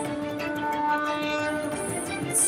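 Soft background score music: a sustained low drone with long held notes above it and no beat.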